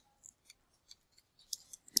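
Faint, irregular clicks of computer keyboard typing, a few keystrokes scattered through the two seconds.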